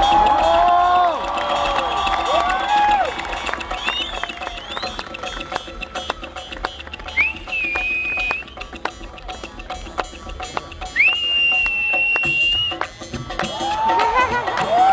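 Live Rajasthani Manganiyar folk music: voices sing gliding phrases at the start, then the music thins to sharp percussive clicks with two long, steady high notes. The singing comes back near the end.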